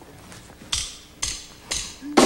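Three sharp, evenly spaced percussive clicks about half a second apart: a drummer's count-in just before the band comes in.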